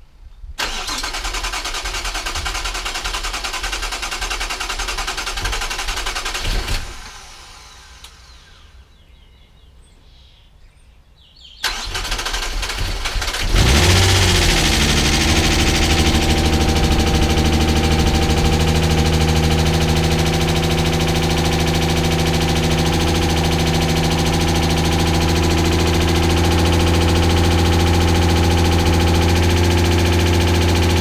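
Mazda KL-DE 2.5-litre V6 on its first start after being fitted: the starter cranks it for about six seconds without it catching. After a pause of about five seconds it cranks again, and the engine fires about two seconds later and settles into a steady idle.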